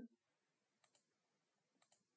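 Two computer mouse clicks about a second apart, each a quick pair of short ticks, against near silence.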